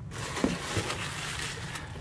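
Packaging rustling as a hand rummages inside an open cardboard box with loose plastic wrap: a steady, fairly even rustle.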